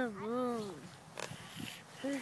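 A single drawn-out vocal sound, a coo-like hum that wavers in pitch and fades out about a second in.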